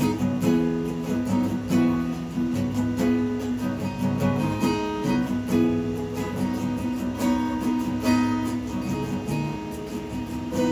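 Instrumental music: acoustic guitar strumming chords in a steady rhythm.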